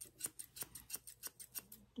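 Thinning scissors (Ashley Craig Art Deco thinning shears) snipping through a springer spaniel's neck coat: a quick, even run of faint snips, several a second.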